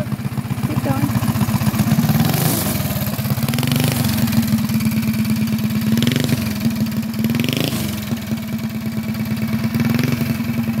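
Junior dragster's small single-cylinder engine running as the car rolls down a driveway, its pitch rising and dipping a few times.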